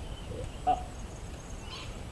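Faint bird chirps over a low, steady outdoor background, with a single short spoken 'uh' about half a second in.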